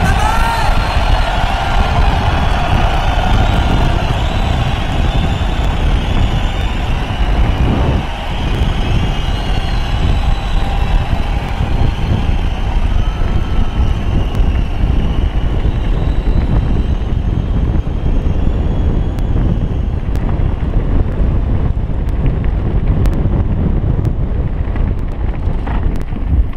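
Mountain bike descending a dirt and rock trail at speed: loud wind buffeting on the helmet-camera microphone and tyres rattling over the ground. A wavering high-pitched whine runs through roughly the first half and fades out.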